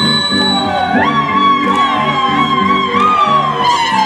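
Andean folk dance music played live: one long high melody note held, then sliding slowly down, over a steady rhythmic plucked-string accompaniment.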